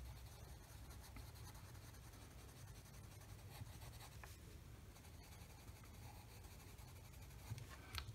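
Faint scratching of a coloured pencil shading on paper, over a low steady hum.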